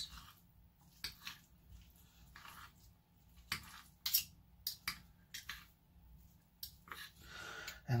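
Knife and fork clicking and scraping against a dinner plate, cutting chicken into pieces and mixing it into rice: a scattering of light, irregular clicks.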